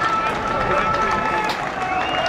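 Pitch-side sound of a football match in play: voices of players and spectators calling out, one held call running through most of the moment, over outdoor ground noise. A single sharp knock sounds about one and a half seconds in.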